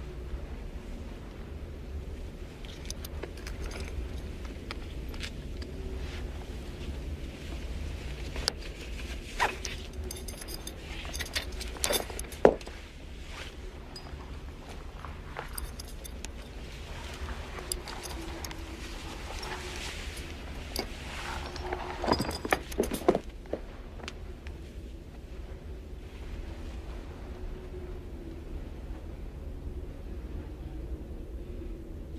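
Metal straitjacket buckles clinking and jangling in scattered bursts as the jacket is unfastened, busiest in the middle and again near the end, over a low steady hum.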